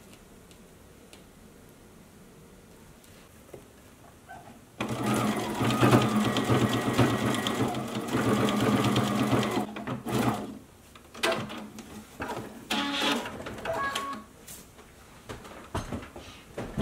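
Brother computerized sewing machine stitching through black sequin fabric: after a few quiet seconds it runs steadily for about five seconds with a low hum, stops, then sews in several short bursts.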